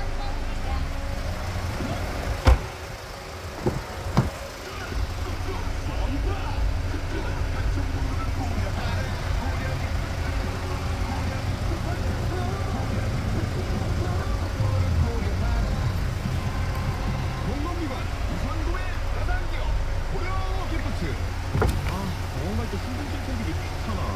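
Low steady rumble inside a car cabin with indistinct background voices, and a few sharp knocks about two to four seconds in, the first the loudest.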